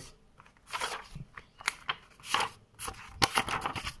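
Sheets of A5 paper rustling and swishing as they are pulled one by one off a held stack and laid onto piles on a table, a short burst about twice a second: uncollated photocopies being collated by hand.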